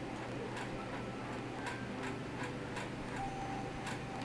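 Long fingernails tapping and clicking on tarot cards laid on a table: sharp, irregular clicks roughly every half second.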